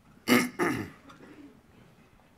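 A man clearing his throat in two quick bursts about half a second in, picked up close by his headset microphone.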